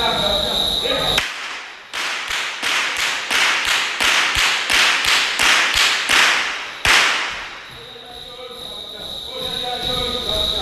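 A masquerader's whip cracking in a rapid run, about three cracks a second, with a trailing ring after each in the large hall. The last and loudest crack comes about seven seconds in.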